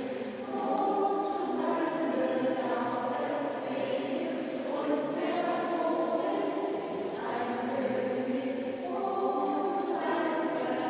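Choral music: several voices singing long, held chords that change every second or two.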